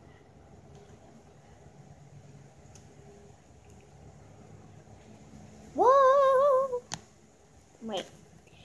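A girl's high-pitched vocal whine or hum, rising and then held for about a second with a slight wobble, a bit past the middle; a sharp click follows just after it.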